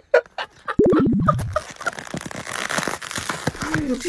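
A styrofoam takeout container and its foil being ripped open, crackling and tearing for a couple of seconds. It starts with a few sharp clicks and a loud cry falling in pitch about a second in.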